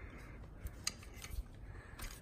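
Quiet handling noise: a few faint, scattered small clicks and light rubbing.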